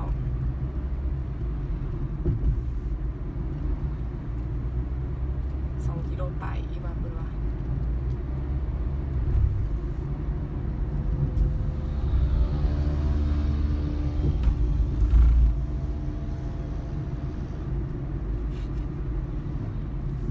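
Steady low rumble of a car driving, engine and tyre noise heard from inside the cabin, with a louder low bump about three-quarters of the way through.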